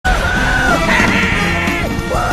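A long, held yell from a male cartoon character over loud film music.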